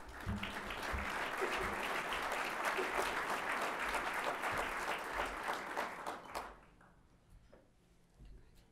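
Audience applause, many people clapping at once, which stops fairly suddenly about six and a half seconds in.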